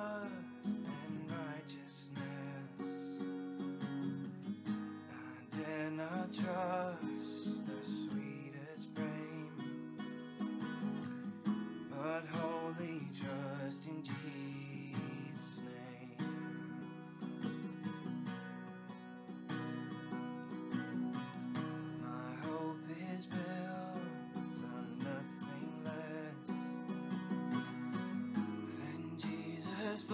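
Strummed acoustic guitar accompanying a man's solo singing of a slow worship song, the voice coming in and out between guitar-only passages.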